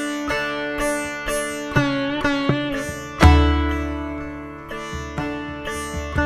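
Sitar being plucked: single notes that ring on with many overtones, some bent in pitch. About three seconds in, a deep low note sounds loudly and rings for nearly two seconds.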